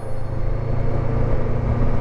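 Honda NX500's 471 cc parallel-twin engine running steadily as the motorcycle cruises at about 35 mph, a constant low drone mixed with wind and road noise.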